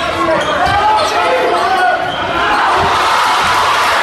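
A basketball dribbled on a hardwood gym floor, a series of bounces, under people talking and calling out, with the echo of a large gym.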